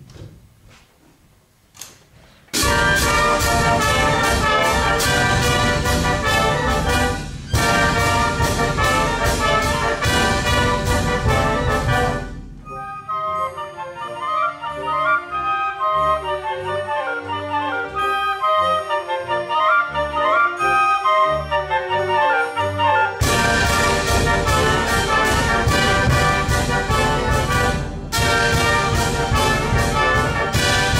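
An orchestra starts playing about two and a half seconds in, loud repeated chords from the full ensemble. It drops to a quieter passage with a moving melody about halfway through, then the full ensemble comes back loud about three quarters of the way in.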